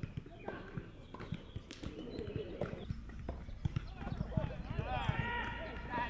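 Footballs being kicked on a grass field, irregular dull thuds, with players' distant voices calling out, growing louder toward the end.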